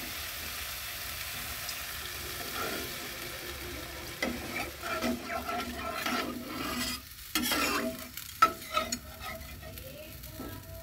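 Spice paste sizzling in a black iron kadai, then from about four seconds in a steel spatula stirring and scraping through the thin gravy in repeated strokes. A sharp clank of metal on the pan about eight and a half seconds in is the loudest sound.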